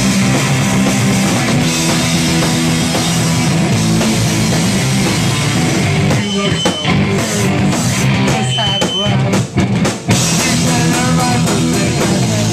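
Live rock band, with distorted electric guitars, bass guitar and a drum kit, playing loud, fast punk-style rock. About halfway through, the band plays a stop-start section of separate hits with short gaps between them, then the full band comes back in near the end.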